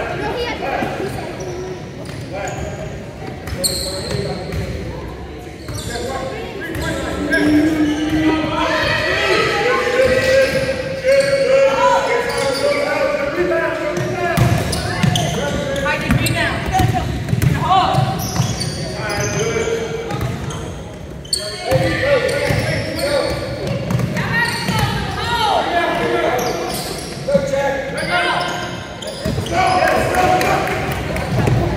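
Spectators and players shouting and talking, indistinct, over a basketball bouncing on a hardwood gym floor, all echoing in a large hall.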